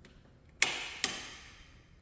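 Two sharp clicks about half a second apart, a wall light switch being flipped, each echoing briefly in the bare room.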